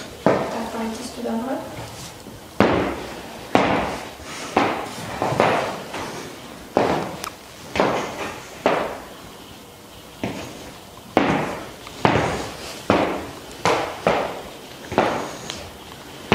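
Stiletto heels of leather knee-high boots clicking on a hard studio floor: a dozen or so sharp steps, unevenly spaced about a second apart with a short pause near the middle, each ringing briefly in the room.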